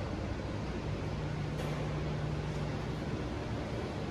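Steady room noise of a large hall: an even rushing hiss with a low steady hum that comes in about a second in, typical of ventilation or air-handling equipment.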